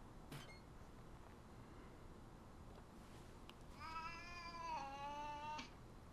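A cat sound effect from a cartoon soundtrack: one drawn-out yowl, almost two seconds long, falling slightly in pitch, starting about four seconds in.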